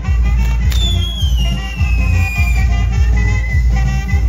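Live band music with a steady bass-drum beat. Less than a second in, a firework on the dancer's bull-shaped frame goes off with a sharp pop and a whistle that falls slowly in pitch over about two seconds.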